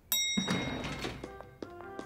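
Cartoon elevator arrival: a sudden knock and a single bright chime ding as the car arrives. About a second later a short musical cue of held notes comes in.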